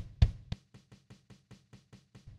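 Sampled acoustic drum kit from the BFD3 virtual drum plugin playing a pattern: one louder hit just after the start, then a quiet, even run of light hits at about seven a second.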